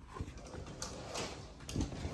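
Heavy curtains being handled and pushed aside: fabric rustling with a few light knocks and clicks, a duller thud near the end.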